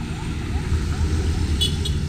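Road traffic passing on a highway: a steady low engine rumble from a small passenger van and a motorcycle going by. Two brief high chirps sound near the end.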